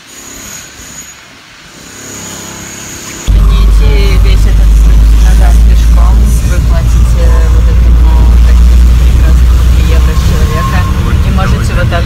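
Inside a moving minibus: a loud, steady low rumble of engine and road noise that starts suddenly about three seconds in, after a quieter stretch. Faint voices sound over it.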